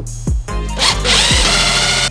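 A power drill runs for just over a second, driving a screw to fasten a side splitter under a car's rear bumper; it starts a little under a second in and is the loudest sound. Background music with a steady kick-drum beat plays throughout.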